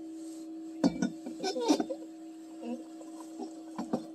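Steady high hum of a small USB fan blowing air into a log stove's fire, with sharp metallic clinks from a stainless steel pot about one and two seconds in.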